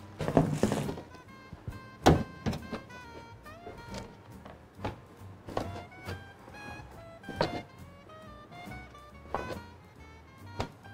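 Hands patting soft bread dough flat on a metal baking tray: a string of dull slaps every second or two, over light background music.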